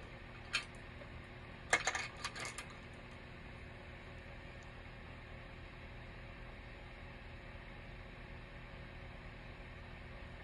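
A few light clinks and clicks as make-up tools are handled, one about half a second in and a short cluster about two seconds in, then a steady low background hum.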